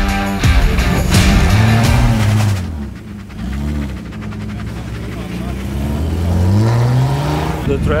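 BMW E36 drift car's engine revved several times, its pitch rising and falling in short arcs, then a longer climb near the end. Rock music plays under the first few seconds and then stops.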